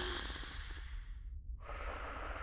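A person's faint breathing over a low steady hiss; the hiss briefly drops out about one and a half seconds in.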